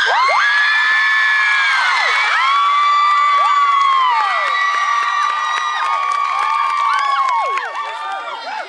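A crowd of girls screaming and cheering, many long high-pitched screams overlapping, starting suddenly and thinning out near the end.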